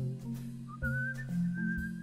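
A whistled melody line comes in about two thirds of a second in, sliding up to a high held note with a slight waver. It sits over a soft bossa nova accompaniment with steady low bass notes.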